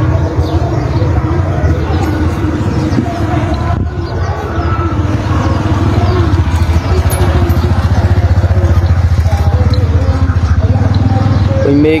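An engine running steadily nearby, a low rumble with an even pulse, with voices faintly in the background.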